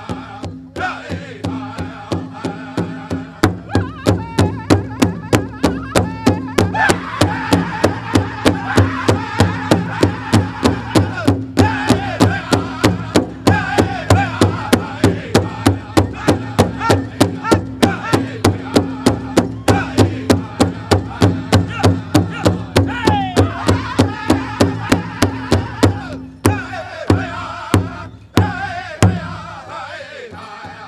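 Powwow drum group singing in high voices over a large shared drum beaten in a steady, fast beat of about three strikes a second. The drumming comes in a few seconds in, and near the end the song stops with a few separate last beats.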